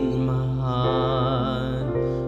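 A man's singing voice holding a long note with vibrato over a karaoke instrumental backing track.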